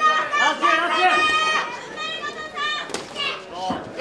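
Shouting from ringside during a kickboxing bout: several high-pitched voices yelling over one another, one call held for about half a second. A single sharp smack cuts through about three seconds in.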